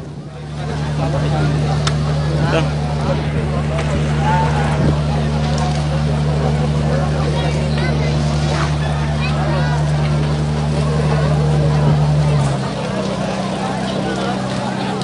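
A motor running with a steady low hum under the chatter of a crowd; about twelve and a half seconds in its lowest notes drop away and a higher hum carries on.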